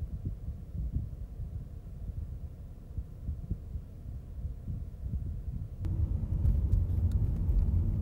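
Low, uneven rumble from a stationary vantage point. About six seconds in, it switches abruptly to louder, steadier car driving noise: engine and tyre rumble heard from inside a moving car, with a few faint clicks.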